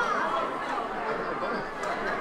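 Faint, indistinct voices chattering over a steady hiss.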